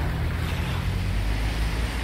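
A motor vehicle's engine running, a steady low hum, over an even hiss of rain and outdoor noise.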